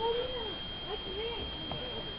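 Background chatter of many overlapping voices, with one louder drawn-out rising-and-falling voice right at the start. A steady thin high-pitched tone runs underneath.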